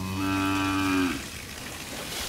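A beef cow mooing once: a long, low call that drops in pitch and stops about a second in.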